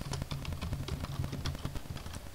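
Computer keyboard typing: a run of irregular key clicks as a web address is typed, with a steady low hum underneath.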